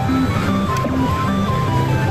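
Pachislot machine's electronic game music playing loudly while its reels spin: a melody moving in clean stepped notes over a repeating bass line.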